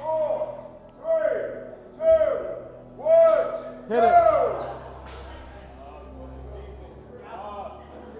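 A person's voice shouting a short call about once a second, five times, the last one loudest, then a quieter stretch with a brief hiss about five seconds in.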